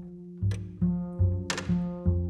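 Upright double bass played pizzicato, a jazz line of plucked low notes. About one and a half seconds in, a sharp percussive hit with a briefly ringing, hissing tail cuts through, the loudest sound here.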